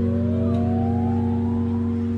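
A live band playing an instrumental passage: a low guitar chord is held steady while a thin tone slides slowly upward over it.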